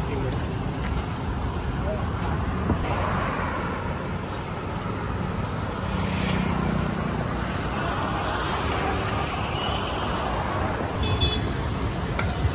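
Road traffic going by, cars passing one after another over a steady background rush.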